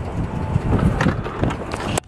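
Outdoor street noise with an uneven low rumble of wind on the microphone and a couple of faint clicks.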